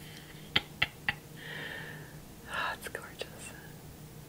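Close-up mouth sounds while lipstick is applied to the lips: three sharp lip smacks in the first second, then a soft breathy exhale, another short breath and a few softer smacks.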